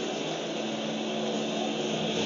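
Steady crowd noise of a baseball stadium coming from a television broadcast's background audio, heard through the TV's speaker.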